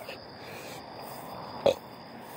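Faint outdoor night ambience with a steady high-pitched insect drone, broken once by a short sound about three-quarters of the way through.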